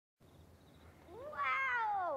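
A cat's long meow, starting about halfway in, rising and then falling in pitch.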